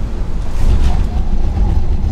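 Loud, steady road and wind rumble inside the cabin of a Tesla Model 3 Performance driving at about 75 mph. It is an electric car, so tyres and wind make the sound rather than an engine. The rumble grows a little louder about half a second in.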